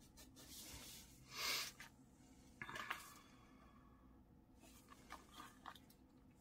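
Faint rustling and rubbing of paper and sticker sheets being handled, with a louder rustle about one and a half seconds in and a few light taps and clicks.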